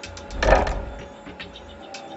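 Hydraulically driven shake table playing back a three-second earthquake motion: a low rushing surge that swells about half a second in and dies away, with rapid clicking and rattling from the wooden-block model building on it.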